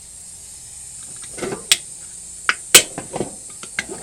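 Aluminium soda cans knocking and clinking against each other and the sink as they are handled, in a few sharp separate knocks, the loudest a little before three seconds in. A steady high hiss runs underneath.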